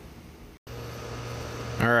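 Faint outdoor background noise that drops out for an instant at a cut, then a steady low machine hum, and a man starts speaking near the end.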